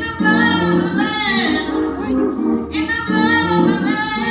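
A solo voice singing a song over instrumental accompaniment, holding long, wavering notes, with a short break between phrases about halfway through.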